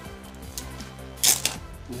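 A short, sharp plastic click a little past the middle: cards in hard plastic holders being handled. Faint background music runs underneath.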